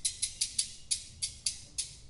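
Drum kit cymbal played alone in a steady, quick pattern of about six light strokes a second, high and bright, with no drums underneath.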